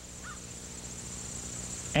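Insects chirring steadily in open-field ambience, with two faint short chirps near the start.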